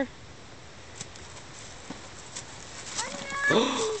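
Quiet outdoor background with a few faint clicks for about three seconds. Then a high-pitched, rising, excited cry and a gasp at the moment the hidden box is spotted.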